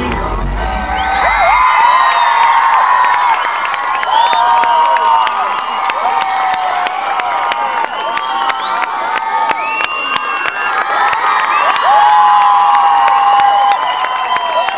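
Concert crowd cheering and screaming, many long high-pitched shouts overlapping, with sharp claps running through. The band's music stops about a second and a half in.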